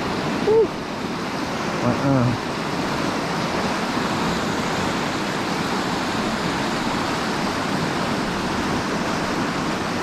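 Steady rush of river water spilling over a low concrete weir. Two brief vocal sounds from a person break through in the first two seconds.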